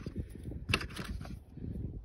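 A few small plastic clicks a little under a second in, as a yellow blade fuse is handled in a red plastic fuse puller, over a low rumble of handling noise.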